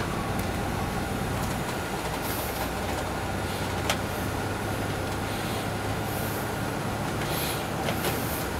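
Cabin noise inside a 2002 MCI D4000 coach under way: the Detroit Diesel Series 60 inline-six diesel running steadily under road and tyre noise. A sharp click about halfway through, and a few brief hissy bursts.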